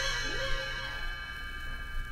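Page-turn chimes of a read-along record ringing out and fading slowly over music: the signal to turn the page.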